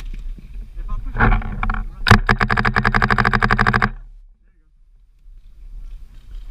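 A rapid, even burst of paintball marker fire lasting just under two seconds, with a shout just before it.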